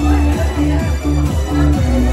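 Instrumental electronic dance backing track playing: a steady beat under a bouncing synth bass line and short repeated synth notes.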